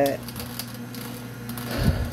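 Nama J2 slow masticating juicer running with a steady low motor hum, its auger crushing the packed greens with scattered faint clicks and crackles. A low thump comes near the end.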